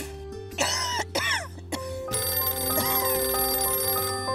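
Mobile phone ringing over background music: two short warbling rings in the first two seconds, then a steady chiming tune.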